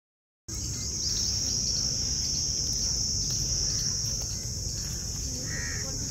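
A steady, high-pitched outdoor insect chorus starts about half a second in, with a low rumble underneath. A brief bird call comes near the end.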